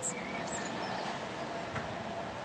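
Steady background noise with a faint, even hum and no distinct event.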